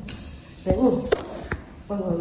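A short murmured vocal sound from a woman, with two sharp clicks of handling over a steady low hiss of room noise.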